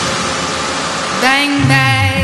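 A smooth hiss of noise, a transition effect between two songs in a music mix. A little over a second in it gives way to the next track starting with held, pitched notes.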